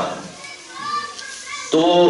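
A child's voice, faint and high-pitched, heard over a pause in a man's lecture; the man's voice comes back in near the end.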